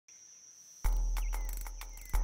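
Forest ambience of insects with a steady high trill, regular clicks and a short gliding bird call. About a second in, a sudden deep low boom enters and slowly fades.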